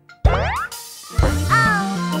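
A cartoon sound effect with a quick upward-sliding pitch, then bouncy children's song intro music comes in about a second later, with a steady bass and sliding tones.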